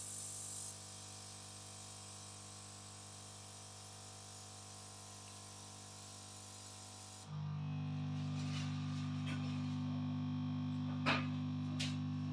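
Air hissing from a hose nozzle used to dry electrode glue on the scalp, cutting off within the first second, over a steady low machine hum. After about seven seconds a louder hum with a higher tone sets in, with two sharp clicks near the end.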